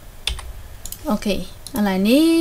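Two sharp clicks of computer input in the first second, then a person's voice beginning, ending in a loud drawn-out syllable.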